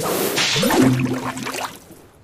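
Big Bass Splash slot game sound effect: a watery whoosh, then a low tone that glides up and holds briefly before cutting off near the end.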